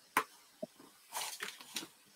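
Handling noise from a small painted craft piece and a fine brush on a work table: a sharp tap, a lighter knock, then about a second of scratchy rustling.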